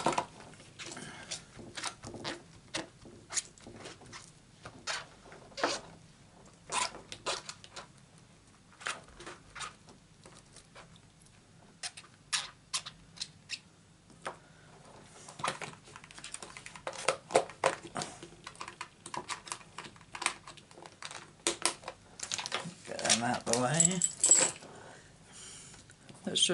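Scattered light clicks and taps of stamping supplies, a clear acrylic stamp block and stamps, being handled and set down on a craft mat. The clicks come thicker and louder in the second half.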